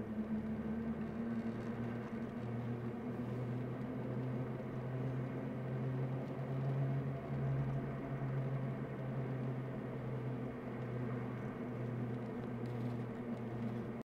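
Car engine and road noise heard inside the cabin while driving: a steady low drone whose pitch wavers a little, over an even rush of tyre noise.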